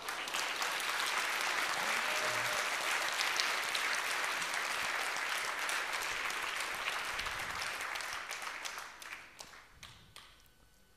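A large seated audience applauding, steady for about eight seconds and then dying away near the end.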